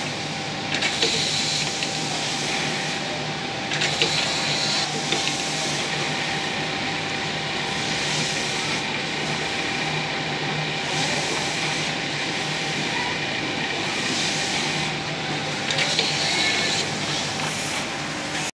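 Automatic template sewing machine running steadily, stitching as its carriage drives the clear plastic template under the needle. Brief higher-pitched bursts come about a second in, around four seconds and near the end.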